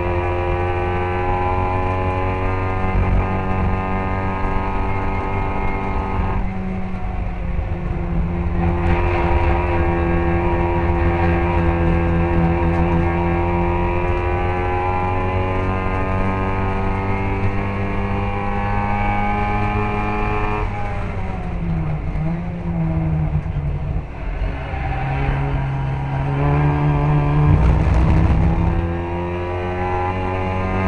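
A classic Mini race car's A-series engine heard onboard, running hard at high revs through a lap. There is a sudden drop in pitch about six seconds in, like a lift or gear change, then the revs climb again. Past the middle the engine lifts off with a falling, wavering pitch, then revs build back up loudly near the end.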